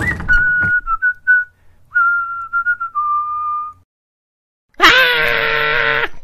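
A man whistling a short, clear tune in a few wavering phrases. About five seconds in comes a loud, sustained cry of alarm.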